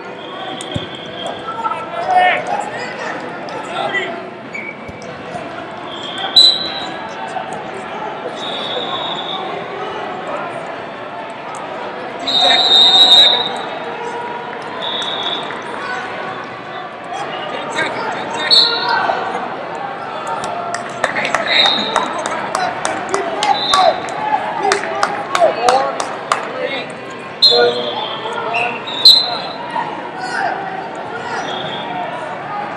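Busy wrestling tournament hall with a constant hubbub of voices from many mats. Short high referee whistle blasts come every few seconds, and many sharp smacks and thuds from bodies and hands on the mats come thickest in the second half. A loud whistle near the end marks the end of the period.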